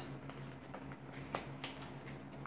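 Faint handling noise as paper cross-stitch chart leaflets are set down and the next one picked up: a few small ticks and two sharper clicks about a third of a second apart past the middle, over a low steady room hum.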